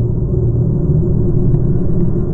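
A loud, steady, deep rumble with no clear pitch.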